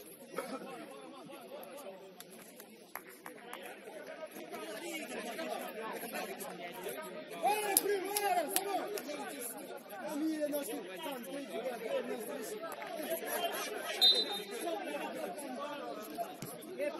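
Indistinct chatter of several voices talking over one another from football players and onlookers, with a couple of louder calls.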